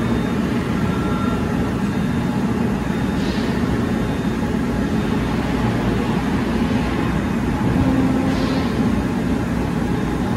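Steady low mechanical hum and rumble of running equipment, unchanging throughout, with two faint brief hisses around 3 and 8 seconds in.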